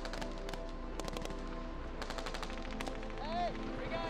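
Rifle gunfire from several soldiers, with shots coming in rapid bursts, over a steady music bed. A short shouted voice comes in just after three seconds.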